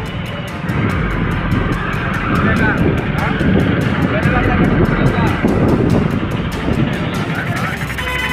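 Busy market street traffic: motorcycle and e-rickshaw engines with people's voices around, and music playing over loudspeakers.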